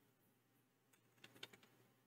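Faint computer keyboard typing: a few scattered keystrokes, with a quick cluster of them about a second and a half in.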